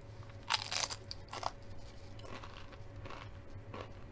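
Close-up crunch of a tortilla chip dipped in cheese sauce being bitten: two loud crunches in the first second and a half, then softer crunchy chewing.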